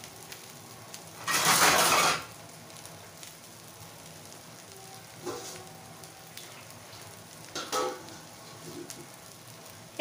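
Rice frying in oil in a kadai with a faint, steady sizzle, stirred with a metal spatula: one loud scraping stir about a second in, and two shorter, weaker ones later. The rice is being fried before the water goes in for the polao.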